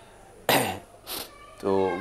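A man coughs once, sharply, about half a second in, followed a moment later by a short hiss.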